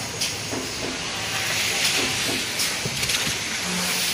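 Double-deck facial tissue bundle packing machine running: a steady hiss with a few faint clicks.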